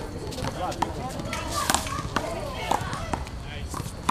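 Rubber handball being struck by hand and smacking off a concrete wall and court during a one-wall handball rally: a series of sharp smacks at irregular intervals.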